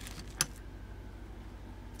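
A single sharp click about half a second in, from things being handled on the work table, over a steady low hum.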